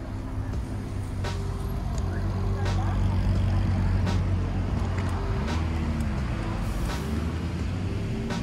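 Low rumble of road traffic that swells to its loudest a few seconds in and then eases, under chill-hop background music with a steady beat.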